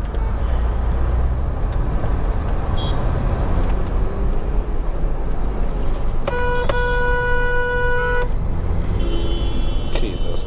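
Steady low rumble of road and engine noise from a car driving in city traffic. About six seconds in, a vehicle horn sounds once, held for about two seconds.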